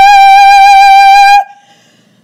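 A person's deliberately screeched singing: one long, high, steady note held for about a second and a half, then cut off abruptly.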